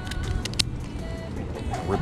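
A few quick snips of scissors cutting the legs off a crab about half a second in, over a steady low wind rumble on the microphone.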